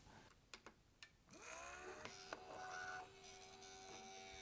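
Thermaltake Tide Water water-cooling pump starting up about a second in, its faint whine rising briefly and then holding as a steady hum, after a few small clicks. The pump is running dry with air trapped in it, and the owner suspects an electronic problem because it only spins from time to time.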